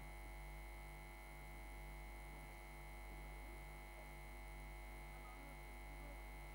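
Faint, steady electrical mains hum with no speech over it.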